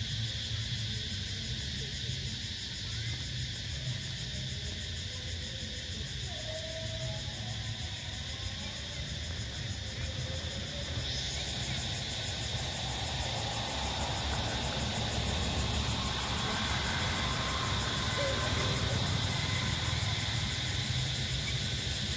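Outdoor ambience: a steady low rumble under a constant high insect drone, with a few faint chirps. The high hiss gets louder about halfway through.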